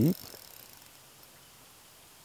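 A man's spoken question ending just as it begins, then only a faint, steady background hiss with no distinct sound.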